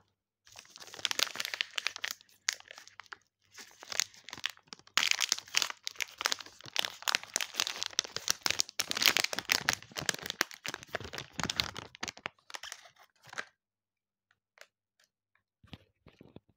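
Millennium chocolate bar's wrapper being torn open and peeled off by hand: a long run of crinkling and crackling that stops about three-quarters of the way through, then goes quiet apart from a few faint ticks.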